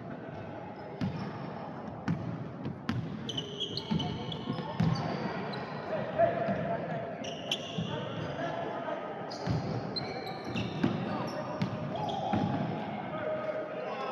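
Basketball dribbled on a wooden gym floor, with repeated thuds, among short high sneaker squeaks and the voices of players and spectators in the hall.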